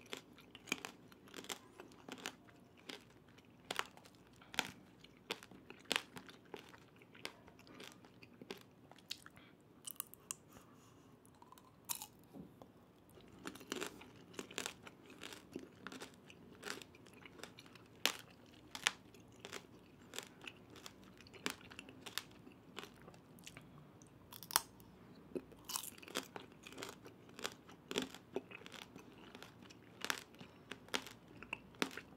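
Close-miked crunchy chewing of tanghulu: the brittle hard-sugar shell cracks in sharp, irregular crackles several times a second.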